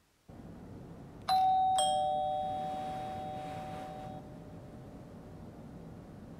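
Two-note ding-dong doorbell chime: a higher note, then a lower one about half a second later, both ringing out and fading over a couple of seconds. A steady low hum lies underneath.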